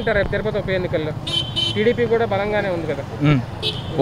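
A man's voice over busy street traffic, with a short vehicle horn toot about a second and a half in.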